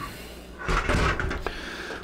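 Handling noise of an empty Fractal Design Focus G steel mid-tower PC case being turned around on a wooden table: a short scuffing rattle a little under a second in, then a light click.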